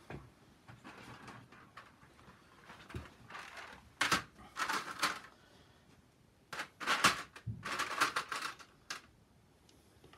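Several short bursts of rustling and clicking handling noise, such as objects being moved and handled on a table, mostly in the second half.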